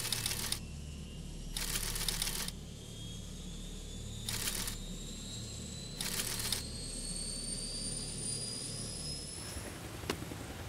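Radio sound effect: four short bursts of static, with a faint whistle slowly rising in pitch and a low hum beneath.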